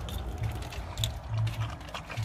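A Rottweiler eating wet meat chunks from a stainless steel bowl: irregular wet chewing and lapping with short clicks against the metal, one sharper click about a second in.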